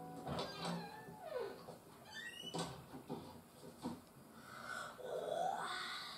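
Faint audio from a television playing in the room: a few short falling and wavering calls like an animal's, and a couple of soft clicks.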